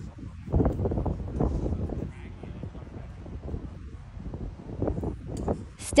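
Indistinct chatter of spectators with wind buffeting the microphone, swelling for a second or so near the start.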